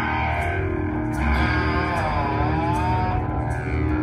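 Rock band playing live: distorted electric guitars over bass guitar and drums, with cymbals struck repeatedly. A lead guitar line bends down and back up in pitch about halfway through.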